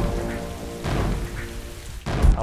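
Intro music: a held chord dying away under a crackling thunder sound effect, with a fresh noisy hit about a second in.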